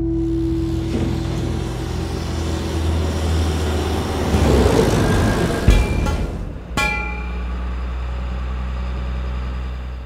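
Produced intro sound design: a steady low rumble under a whoosh that swells to a heavy impact about six seconds in. A second, ringing hit comes about a second later, and the low rumble carries on.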